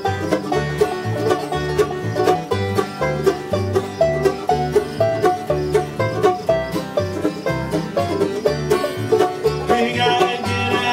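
Bluegrass band playing an instrumental passage on banjo, acoustic guitars, mandolin and upright bass, the bass on a steady beat of about two notes a second. A singing voice comes in at the very end.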